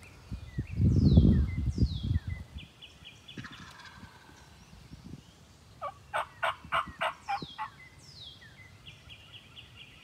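A wild turkey gobbles once about six seconds in, a rapid rattle of about eight notes in under two seconds, in answer to a hunter's call. Songbirds sing repeated downward-sweeping notes around it, and a loud low rumble comes near the start.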